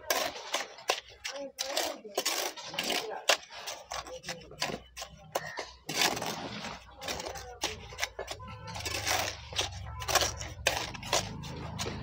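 Steel mason's trowel scraping and tapping on wet cement mortar and clay bricks as a brick course is laid and jointed: a quick, irregular run of clinks and scrapes, with a low hum joining about four seconds in.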